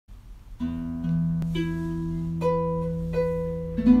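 Gentle background music on a harp: slow single plucked notes that ring on over held low notes, starting just after the beginning.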